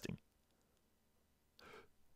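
Near silence between spoken sentences, with a faint, short intake of breath near the end.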